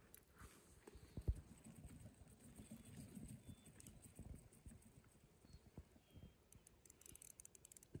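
Very faint, irregular clicking and handling noise of a fishing reel being cranked while a small hooked trout is reeled in, with one sharper click about a second in.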